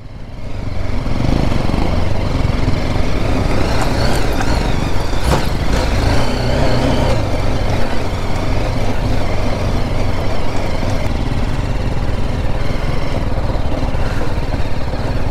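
A single-cylinder adventure motorcycle's engine running at low speed while riding over bare rock, with heavy wind rumble on the microphone.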